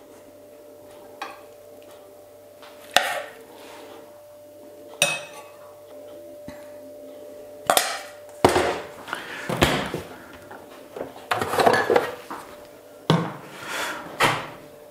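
A metal spoon clinking and scraping against a stainless steel bowl and china plates as beetroot salad is served out: a few separate clinks at first, then a busier run of knocks and scrapes in the second half.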